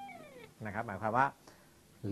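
A held note on a semi-hollow electric guitar slides down in pitch and fades over the first half second. A man then says a few words.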